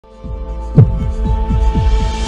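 Sound-designed intro sting for an animated logo: a low drone with repeated deep pulses falling in pitch, about four a second, and one loud hit just under a second in.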